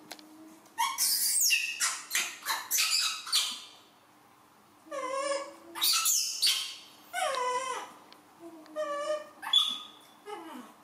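A young macaque crying in its distress calls: repeated high, wavering cries in bursts, with a short pause about four seconds in and another near the end, as it is left alone and ignored.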